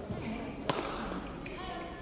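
A single sharp smack on a badminton court about two-thirds of a second in, the loudest sound here, typical of a racket striking the shuttlecock; voices follow near the end.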